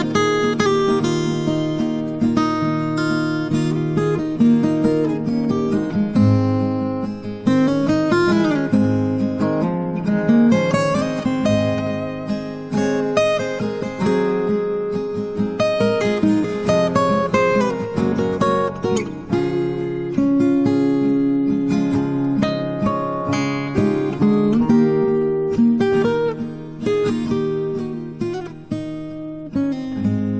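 Instrumental section of a song: acoustic guitar strummed and picked, with no singing.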